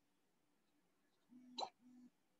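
Near silence: room tone, with one faint, brief sound about one and a half seconds in.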